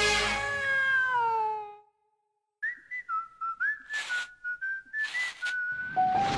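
Cartoon theme music ending on a chord whose notes slide down in pitch and fade out. After a short silence comes a whistled tune of short stepping notes, broken by breathy gaps.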